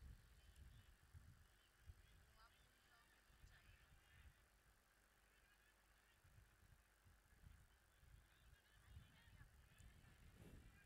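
Near silence: a faint low rumble that comes and goes, with a few faint high chirps.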